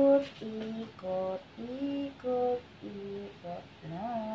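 A woman humming a slow tune, held notes stepping up and down about twice a second.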